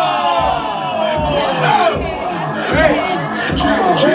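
Crowd of onlookers shouting and hollering at a dance battle, several voices in long falling calls near the start, over music with a steady beat.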